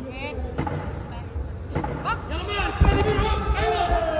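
Voices calling out in short bursts across a large, echoing hall, with one sharp thud about three seconds in.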